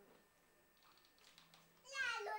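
Near silence: faint room tone with a few soft rustles, then a high, wavering cry begins right at the end.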